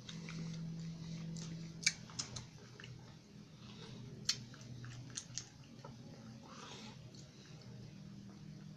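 Faint drinking sounds from a man sipping juice from a plastic bottle and swallowing, with a few short sharp mouth clicks in the middle, over a low steady hum.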